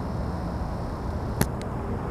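Steady low outdoor rumble, with a sharp click about one and a half seconds in and a fainter one just after.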